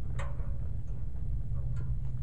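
A few sharp metal clicks, one with a brief ring, as a stabilizer arm is fitted to a header transport kit's steel frame, over a steady low rumble.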